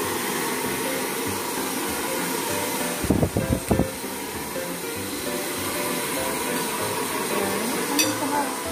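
A hand-held hair dryer running steadily, with background music under it. A short burst of low thumps and rumble comes about three seconds in.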